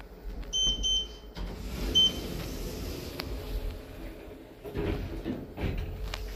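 Beeps from a Schindler lift's keypad car panel as buttons are pressed: two short beeps about half a second in and a third about two seconds in, all at the same high pitch. After them a low steady hum of the lift car running.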